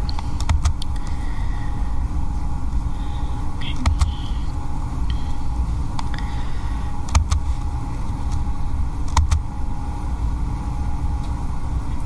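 Steady low rumble of room background noise, with a few sharp clicks scattered through it.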